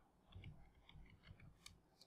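Faint computer keyboard typing: a few scattered soft key clicks, with one sharper click near the end.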